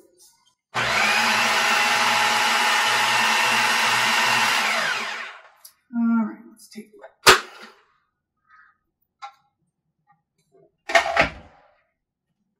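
Countertop food processor motor running steadily for about four seconds as it purées a roasted-carrot dip, then winding down in pitch as it is switched off. A sharp click follows, and near the end a short clatter as the lid comes off.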